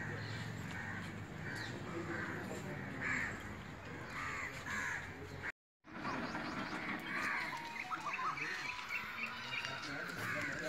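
Birds calling repeatedly in short calls over a low steady hum. The sound drops out briefly a little past halfway.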